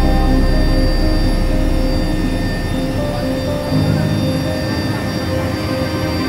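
Steady engine drone inside a helicopter cabin, with a deep low rumble that is heaviest for the first couple of seconds and then eases, mixed with background music.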